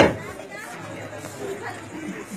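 A final drum stroke rings out as the drumming stops at the very start, followed by low, murmured chatter from a seated crowd.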